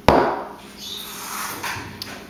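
Aerosol can of cooking spray set down on a granite countertop with a single sharp knock, followed by faint rustling.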